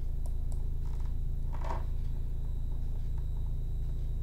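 Steady low electrical hum, with a few faint clicks and one short soft sound near the middle.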